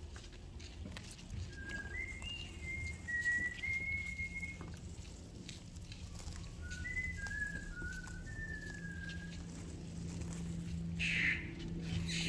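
Someone whistling a slow tune in two short phrases of held, level notes that step up and down in pitch, with a pause between them. Faint rustling and snapping of leaves being picked runs underneath.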